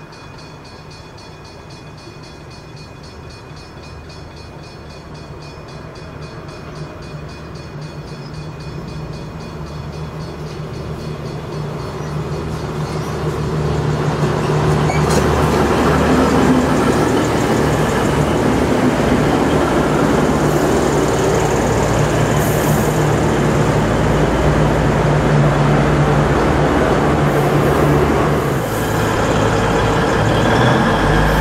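A diesel locomotive-hauled V/Line passenger train approaching and running through a station. It grows steadily louder for about the first dozen seconds, then the carriages go past with a loud, steady rumble.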